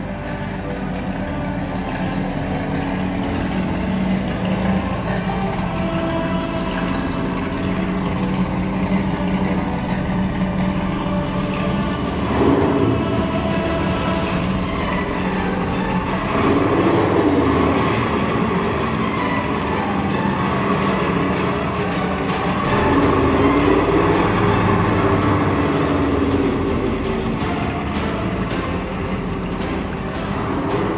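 Engine sound of a radio-controlled toy monster tow truck driving, the revs rising and falling three times in the second half, over background music.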